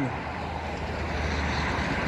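Road traffic going by: a passing vehicle's steady low engine hum under a broad tyre-and-air rush that builds slightly, the hum dropping away near the end.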